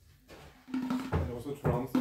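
A frame drum struck by hand a few times, each strike leaving a short low ring; the strikes begin a little under a second in.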